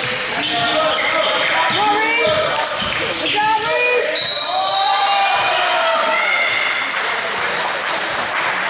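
Live basketball play in a gym: sneakers squeaking on the hardwood court in short rising and falling chirps, the ball bouncing, and players' voices calling out, all echoing in the hall.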